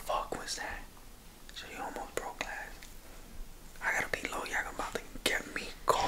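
A man whispering in short, broken phrases; the words are not clear.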